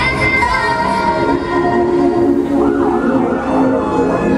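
A wavering, siren-like wail over loud music, the pitch wobbling up and down most clearly in the second half.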